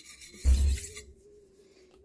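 Steel knife blade scraping across a wet sandstone river stone in a sharpening stroke, with a dull low thump about half a second in. It then stops and goes quiet.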